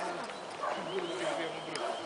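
Quiet background speech: people talking at a distance, no words clear.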